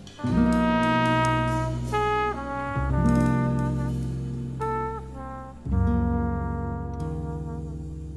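Jazz trumpet playing a slow melody of long held notes in three phrases, over low sustained notes underneath.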